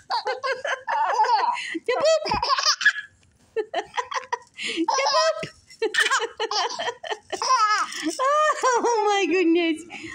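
A baby laughing in repeated bursts of giggles and belly laughs, with a short pause about three seconds in.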